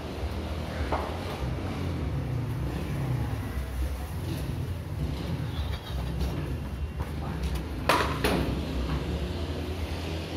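Wind buffeting the phone's microphone as a steady low rumble, with two sharp knocks in quick succession about eight seconds in.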